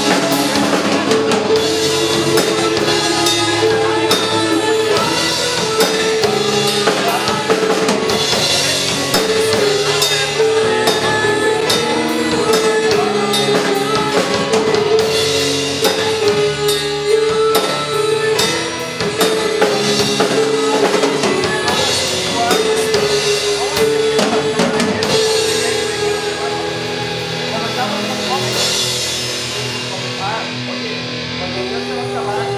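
Live rock band playing an instrumental passage: drum kit with bass drum and snare, electric guitars and bass, over a riff of repeated held notes.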